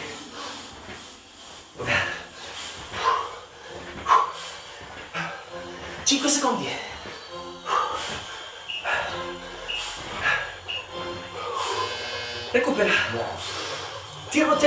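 A man breathing out hard and his shoes landing on a hard floor as he does fast wide squats, about one sharp sound a second. Quiet background music plays underneath.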